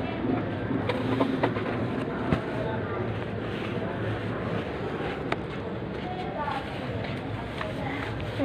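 Plastic shopping bags rustling and crinkling close to the microphone as packed groceries are handled, with scattered small clicks and faint voices in the background.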